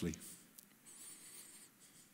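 A pause in a man's amplified talk: the end of a word, then quiet hall room tone with a faint high hiss about a second in.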